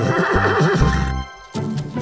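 A cartoon animal-cry sound effect with a warbling, whinny-like pitch over background music, lasting about a second. A short gap follows, then the music carries on with light ticking clicks.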